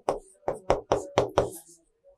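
Chalk tapping on a chalkboard while writing: a quick run of about six short taps over the first second and a half, then it stops.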